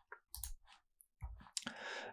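A few faint, short clicks, scattered and spaced apart.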